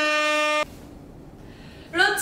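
A steady, horn-like tone with a rich buzzy timbre, held flat and then cut off suddenly about half a second in. A quiet hiss follows, and a woman's loud voice starts right at the end.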